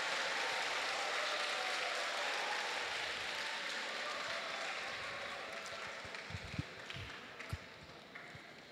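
Audience applauding: the clapping starts at once, slowly dies away over about six seconds, and a few scattered last claps follow near the end.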